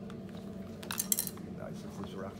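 Hard plastic parts of an anatomical eye model clicking and clattering as a detachable muscle piece is pulled off and set down on the table, with a brief cluster of sharp clicks about a second in.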